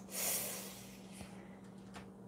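A short breath out through the nose, lasting about half a second, right after a small mouth click, then fading to a faint steady hum.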